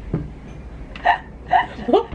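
A woman laughing in short, separate bursts: a few brief laughs in the second half, the last one rising in pitch.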